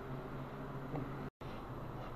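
Steady low hum of room tone, with a faint click about a second in and a brief complete dropout a little later where the recording is cut.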